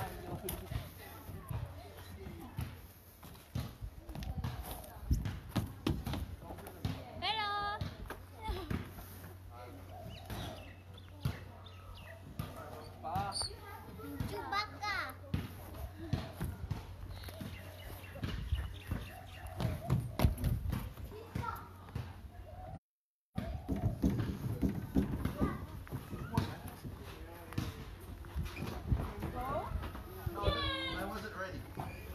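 Children playing, with high children's calls and squeals now and then over scattered thuds and knocks. The sound cuts out for a split second about two-thirds of the way through.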